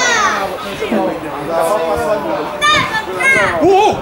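Excited shouting voices: a high-pitched cry at the start, then several more shouted cries close together near the end.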